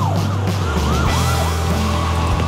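Police car siren sounding in fast up-and-down sweeps, a few a second, fading out about a second in, over low background music.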